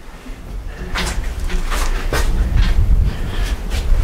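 Handling noise and wind rumble on a hand-held camera's microphone as the camera is swung round: a low rumble that builds toward the middle, with scattered knocks and rustles.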